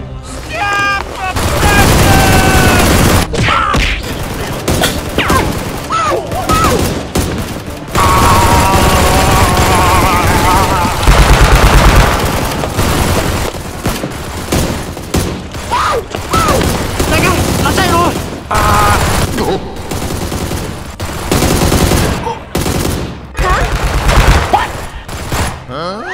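Bursts of rapid gunfire, used as sound effects for a Nerf blaster fight, with shouting voices between and over the shots.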